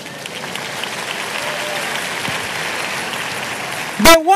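A large congregation applauding, swelling over the first second and then holding steady.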